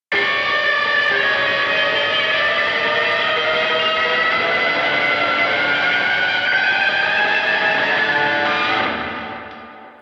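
Recorded distorted electric guitar ornament, dirty-sounding, playing fast sixteenth notes with a lot of string bending while slowly climbing up the neck toward a high D. It fades out about nine seconds in.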